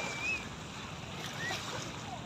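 Small waves lapping on a pebbly shore, with a steady wash of wind noise.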